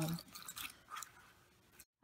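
Faint rubbing and a few light taps of a silicone garlic-peeler tube being rolled on a plastic cutting board, dying away to near silence about a second and a half in.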